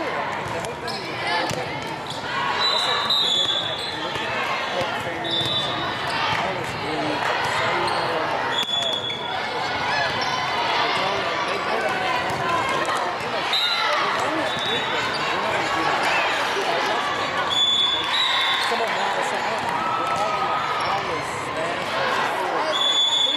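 Indoor volleyball game din: many overlapping voices of players and spectators, with volleyballs being struck and bouncing on the court. Short high-pitched chirps come a dozen or so times.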